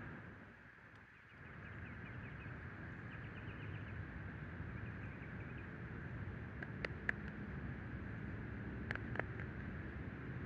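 Steady low outdoor background noise, with a run of faint high chirps a couple of seconds in and two pairs of sharp clicks, about seven and nine seconds in.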